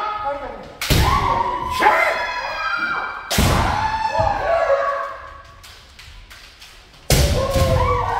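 Kendo sparring: shinai strikes and stamping footwork on a wooden dojo floor, heard as three loud hits about a second in, at about three and a half seconds and near the end. Each hit comes with a long shouted kiai that echoes in the hall, and lighter clacks of bamboo shinai fall in between.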